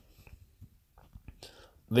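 A pause in a man's speech holding only faint scattered clicks and a short, soft hiss about one and a half seconds in; his talking resumes right at the end.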